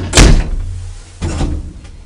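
Elevator door on an old ASEA lift being shut, with a loud bang about a quarter second in and a second, softer clunk about a second later.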